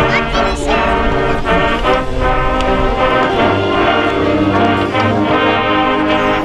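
Marching band playing, its brass sounding a sequence of full held chords.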